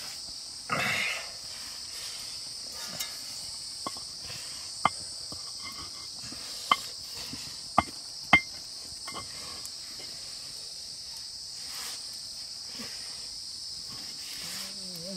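Steady high-pitched chorus of crickets, with a short rustle about a second in and a few sharp clicks in the middle.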